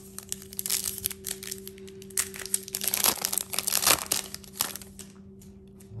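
Foil wrapper of a Panini trading-card pack being torn open and crinkled by hand, a dense crackling that lasts about five seconds and then stops.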